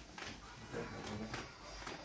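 Quiet room with faint rustling and a few light knocks from a sack and wrapped gifts being handled, and a brief low murmur of a voice.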